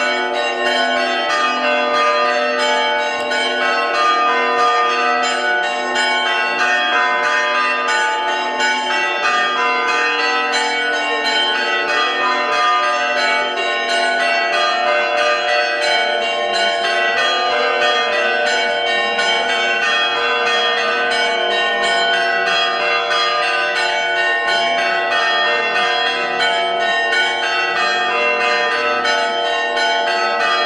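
Greek Orthodox church bells ringing a fast, continuous festive peal: several bells struck rapidly over one another, their tones ringing on without a break.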